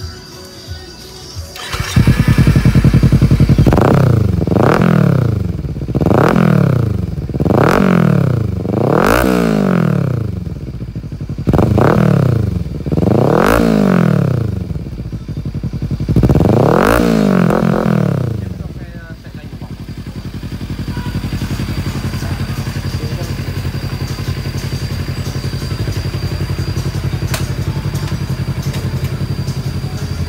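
Kawasaki Z300 parallel-twin engine breathing through a 47 cm full-carbon Akrapovic slip-on muffler, coming in loud about two seconds in and revved in about eight quick throttle blips that rise and fall. From about nineteen seconds on it settles to a steady idle.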